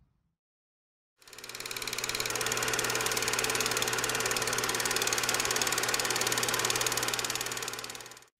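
Film projector running as a sound effect: a rapid, even mechanical clatter over a steady hum. It fades in after about a second of silence and fades out near the end.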